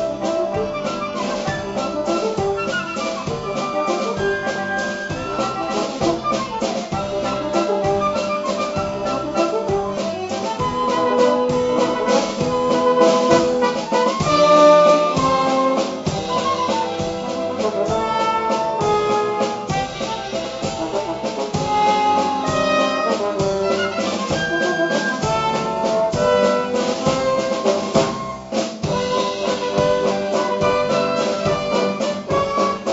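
Theatre pit orchestra playing an operetta waltz, with trumpets and other brass prominent over the strings and a steady beat.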